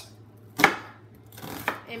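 Chef's knife chopping through an onion and striking a bare countertop with no cutting board: one sharp, loud knock about half a second in, then a softer cut later on. The knife hitting the hard counter is what makes the chops loud.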